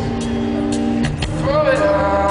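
Live band playing a slow blues ballad in an arena, recorded from the crowd: held chords under drum hits about twice a second, and a sung note that slides up into a long hold about a second and a half in.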